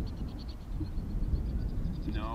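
Low rumble of wind buffeting the microphone, with a faint, rapid, high-pitched trill of evenly spaced pulses running through it.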